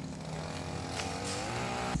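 Lawnmower engine running steadily, its pitch rising a little.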